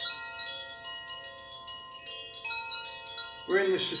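Chimes ringing: several clear high tones struck at irregular moments, each ringing on and overlapping the others. A man's voice begins near the end.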